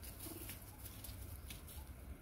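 A single short, low bird call about a quarter second in, faint over a quiet outdoor background with a few light ticks.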